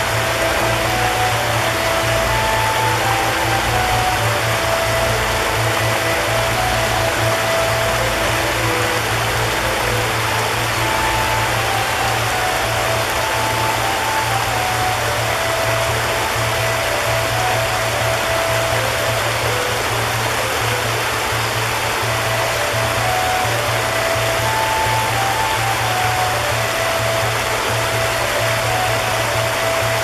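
Shallow stream running over rocks in small cascades, a steady rush of water. A slow, gentle melody of held notes and a low sustained drone are laid over it.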